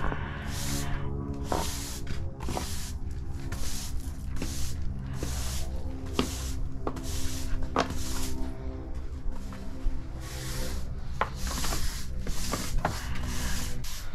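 Push broom sweeping sand off brick pavers in quick repeated strokes, roughly two a second, clearing the joints before sealing. Background music with held notes plays underneath.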